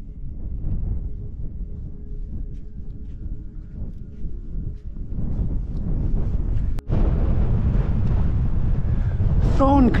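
Wind buffeting the microphone as a steady low rumble that grows louder, jumping up after a brief break about seven seconds in. A man's voice starts near the end.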